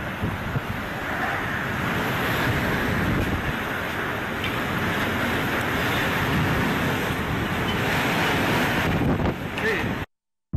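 Hurricane wind and heavy rain making a steady loud rush, with gusts buffeting the phone's microphone.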